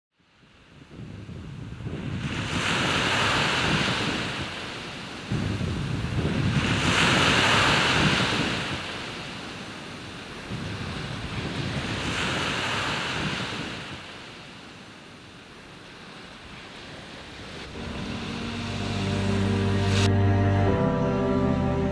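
Ocean waves washing onto a beach, fading in from silence: three slow swells, each rising and falling over a few seconds. Music comes in near the end.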